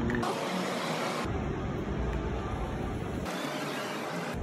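Steady city street background noise with a low traffic rumble.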